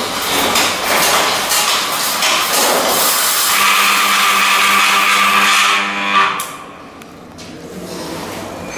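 Hand-spun bicycle rear wheel and chain drive whirring and ticking as the pedal is cranked. A steady hum comes in about three and a half seconds in, and the sound drops away sharply just after six seconds as the electromagnetic disc brake brings the wheel to a stop.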